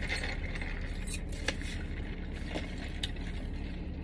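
A few light clicks and scrapes from handling a lidded paper fountain-drink cup and straw, over a steady low hum.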